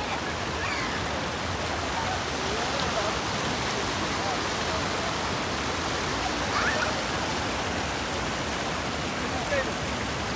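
Steady rush of shallow river water spilling over a flat rock ledge and running across a stony bed.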